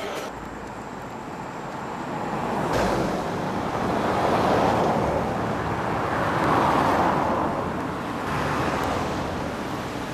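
Road traffic: cars passing one after another, the tyre and engine noise swelling and fading twice, with a single knock about three seconds in.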